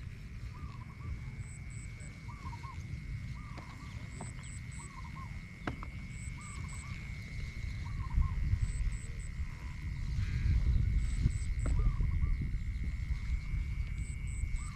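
Field animal calls: a short, arched call repeating about once a second, with groups of three quick high chirps every couple of seconds, over a steady high-pitched whine. A low rumble of wind on the microphone grows louder in the second half.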